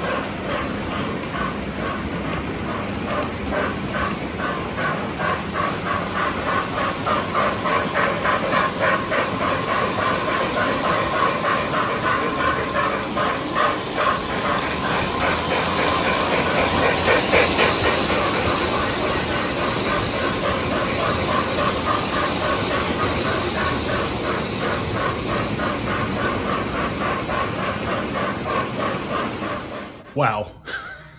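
Lionel O gauge Reading steam locomotive running around three-rail track: its RailSounds give a steady, rhythmic steam chuff with hiss over the running noise of the train. It grows louder, with more hiss, around the middle as it passes close.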